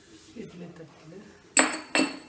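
Two sharp metal clinks with a brief ring, about half a second apart near the end, as a metal idiyappam press knocks against an aluminium steamer pot; the first is the louder.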